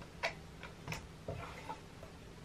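A handful of light, irregular clicks and taps of a screwdriver and fingers against the metal fittings of a vintage Singer sewing machine's belt-driven motor, the sharpest in the first second.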